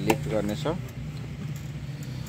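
Mostly speech: a man says a couple of words over a steady low hum, with one sharp click just at the start.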